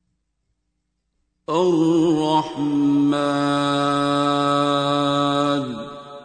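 A man's voice in melodic Quran recitation, starting about a second and a half in: a short wavering phrase, then one long held note that falls away near the end.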